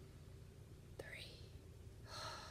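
Mostly near silence. About a second in, a woman makes a mouth click and then a short breath drawn in through the mouth, rising in pitch: a deliberate deep breath.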